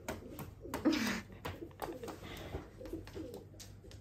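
Crows making low-pitched calls: one falling call about a second in, then a string of short low notes, with a few light taps.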